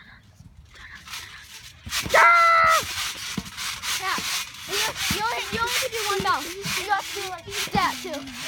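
Boys' voices: one long, loud yell about two seconds in, then excited exclaiming, over scattered thumps from bouncing on a trampoline mat with a yoga ball.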